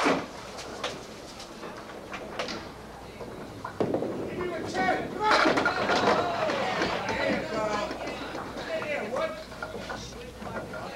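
Candlepin bowling ball crashing into the wooden candlepins about five seconds in, the pins clattering as they scatter and fall, with crowd voices reacting over it. A sharp knock sounds at the very start.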